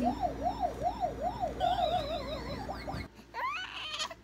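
A siren-like electronic wail, its pitch sweeping up and down about four times a second in a yelp pattern, with a higher warbling tone joining briefly in the middle. It cuts off suddenly about three seconds in.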